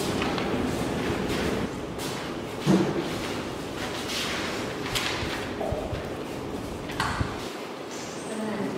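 Paper rustling and handling noise over steady room noise, with a few soft thuds. The loudest thud comes about a third of the way in.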